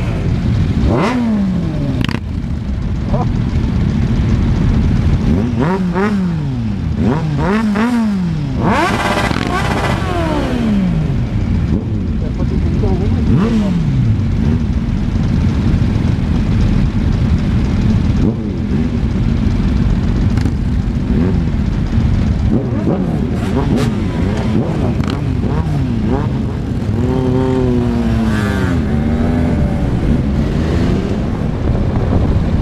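Motorcycles riding in a group through traffic: engines revving up and dropping back in pitch several times, over a steady engine and wind rumble at a helmet-mounted camera.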